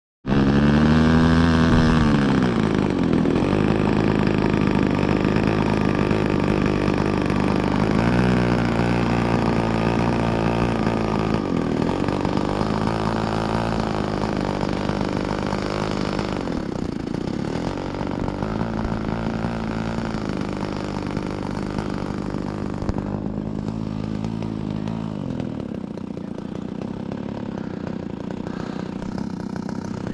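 Radio-controlled T-28 Trojan model plane's small engine and propeller running, its pitch rising and falling several times as the throttle is opened and eased, growing gradually fainter as the plane taxis away.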